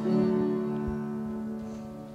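Closing chord of the song on an acoustic guitar, struck once and left ringing, slowly fading away.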